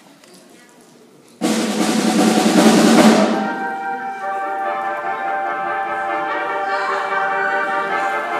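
A live band starts up suddenly about a second and a half in with a loud drum roll and cymbals on a drum kit, which gives way after about two seconds to a sustained held chord.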